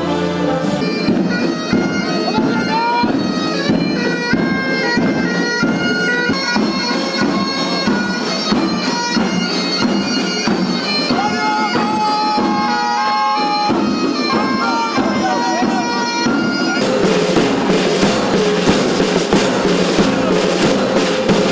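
A marching band's bagpipes playing a melody over their steady drones. Near the end, drums and cymbals come in with a regular beat.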